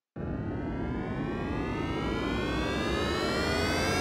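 Cartoon jet-airplane sound effect: an engine whine rising steadily in pitch over a rushing noise, slowly growing louder.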